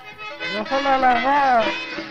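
A man singing one long, wavering phrase of Afghan traditional song, over a steady held note from the instrumental accompaniment.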